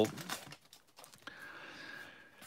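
Faint crinkling of a baseball card pack wrapper and light clicks of trading cards being handled, the rustle beginning a little over a second in.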